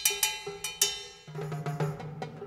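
Live band music in a percussion-led passage: a quick run of struck, ringing metallic percussion hits. A low sustained bass note comes in about halfway, under further hits.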